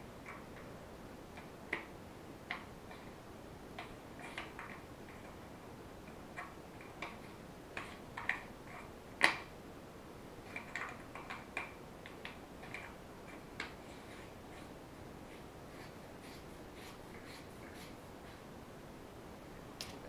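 Faint scattered plastic clicks and knocks from handling a rifle scope, AA batteries being loaded into its battery compartment, with one sharper click about nine seconds in.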